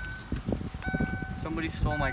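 Ford Mustang's warning chime beeping about once a second, each beep a steady tone, with the driver's door standing open.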